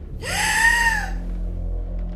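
A woman's single high-pitched squeal, rising then falling in pitch and lasting under a second, from a startled reaction.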